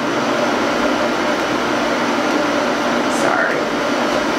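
A steady, even hiss of background noise with a faint low hum, and a brief faint voice about three seconds in.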